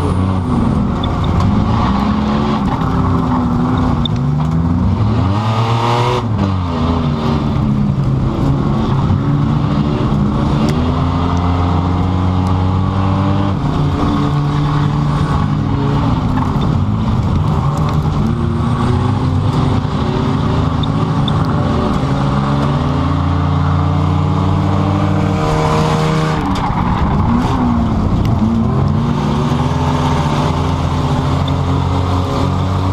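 2005 Pontiac Grand Prix's engine running hard, heard from inside its cabin, its pitch rising and falling with the throttle as it laps the track, with two bigger sweeps in pitch, one about six seconds in and one near the end.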